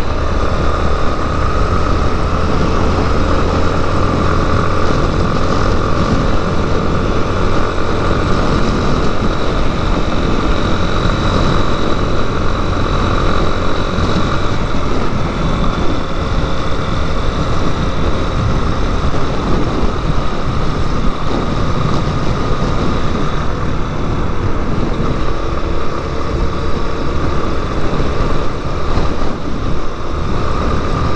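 Yamaha Lander 250 single-cylinder four-stroke motorcycle engine running steadily at cruising speed, heard under loud, continuous wind rush on a helmet-mounted camera.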